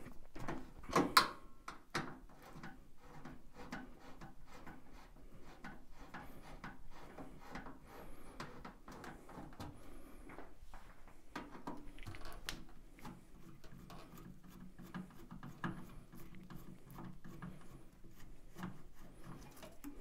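Screwdriver turning out the self-tapping screws that hold the sheet-metal front panel of a Baxi Eco Four 24F gas boiler: faint, irregular ticking and scraping, with louder clicks about a second in and again around twelve seconds.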